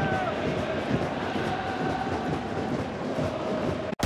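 Football stadium crowd noise, a dense steady hubbub of supporters, with one long note held over it for about three and a half seconds before it breaks off near the end.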